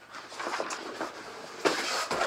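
A large flip-chart paper sheet being lifted and flipped over the top of the easel, rustling throughout, with a louder flap near the end as the sheet goes over.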